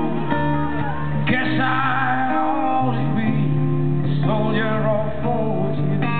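A live band playing a slow rock ballad: strummed guitar over held bass notes, with a melodic line that bends and sustains above it.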